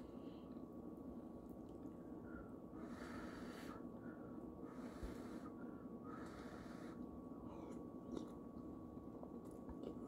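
Faint sounds of a person eating a spoonful of soup: soft breaths through the nose and quiet chewing, with a faint steady high-pitched tone in the background.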